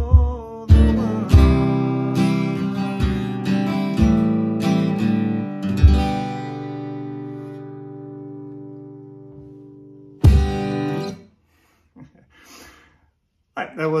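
Steel-string acoustic guitar strummed in a country rhythm while an Ortega bass-drum stomp box kicks on the beat. A chord rings out and fades, then a last stomped chord about ten seconds in is damped short.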